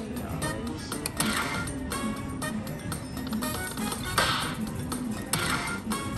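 Video slot machine playing its free-spins bonus music and chiming sound effects, with louder jingling hits about a second in, about four seconds in and near the end.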